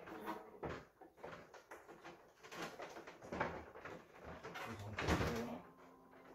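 Knocks, scrapes and clicks of a large plastic air-conditioner housing panel being handled and fitted back into place, irregular throughout and loudest about five seconds in.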